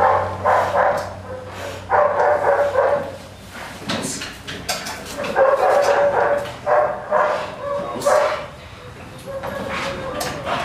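A dog barking in several clusters of quick, repeated barks, with short pauses between them.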